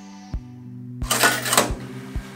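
Coin-operated washing machine's metal coin slide being worked by hand: a click, then a loud rasping metal scrape about a second in that ends in a clunk. Background music plays steadily underneath.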